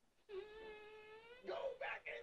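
A man's long, high-pitched strained whine, held on one slightly rising note while he strains to lift a car, breaking about a second and a half in into short, louder grunts of effort.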